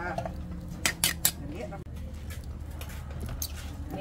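Metal ladle stirring soup in a metal cooking pot, clinking sharply against the pot a few times about a second in, over a steady low rumble.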